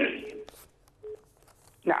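Telephone line of a call-in caller: a sudden burst of line noise at the start that fades within about half a second, then a quiet open line with two faint short beeps.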